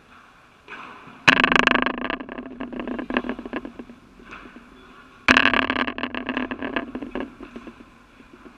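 Padel ball hitting the court enclosure close to the camera twice, about four seconds apart, each strike setting the panel rattling for about two seconds as it dies away. A few softer knocks come in between.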